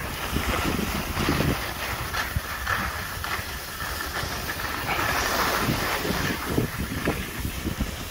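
Skis hissing and scraping over packed snow on a downhill run, in repeated swells as the skis turn, with wind rumbling on the microphone.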